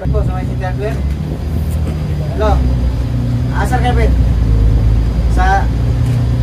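Coach bus engine running as the bus moves off, heard as a steady low drone inside the cabin that grows louder about two seconds in, with short bursts of voices over it.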